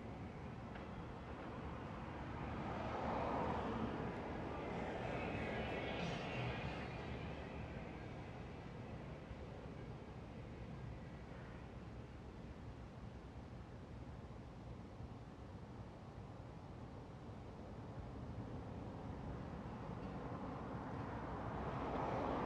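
Street traffic ambience: a steady low rumble, with a vehicle passing that swells and fades a few seconds in.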